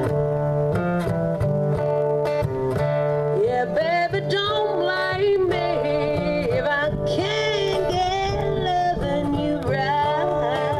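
Live country music: a steel-string acoustic guitar strumming chords, with a lead melody over it that bends and slides in pitch.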